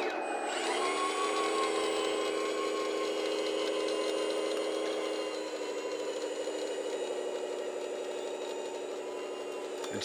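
Electric motors and gearing of a 1/14-scale radio-controlled Caterpillar road scraper whining steadily as it drives through sand with its blade lowered, scraping. The whine eases slightly from about halfway as the machine pulls away.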